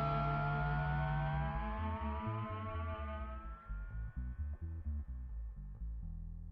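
Recess hold music: sustained synthesizer tones that slowly glide upward over low, pulsing bass notes, fading gradually.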